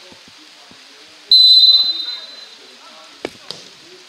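Referee's whistle blown once, a single high-pitched blast about a second in, signalling that the free kick may be taken. About two seconds later the football is kicked, two sharp thuds in quick succession, with players' voices faint in the background.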